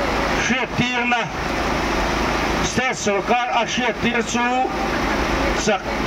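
A man's voice reading a statement aloud into a handheld microphone, amplified through a loudspeaker, in phrases separated by short pauses, over a steady background noise.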